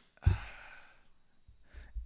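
A man's single short breathy exhale into a close microphone about a quarter second in, fading over about half a second.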